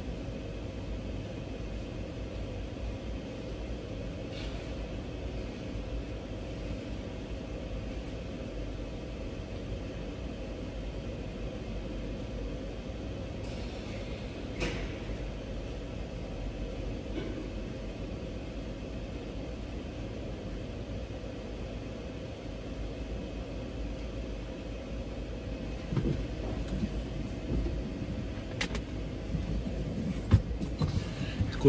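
Steady low mechanical rumble with a faint constant hum, heard inside a semi-truck cab, with a few faint clicks. Louder knocks and rattles come in near the end as someone climbs back into the cab.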